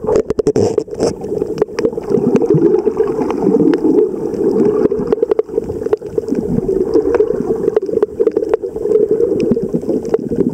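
Muffled underwater sound picked up by a camera in a waterproof housing: a steady low wash of moving water, with scattered sharp clicks and a quick run of clicks about half a second in.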